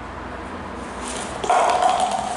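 Paper cups crumpling and tumbling onto a tiled floor, with light clicks, then a sudden short high-pitched squeal held for about half a second, about one and a half seconds in.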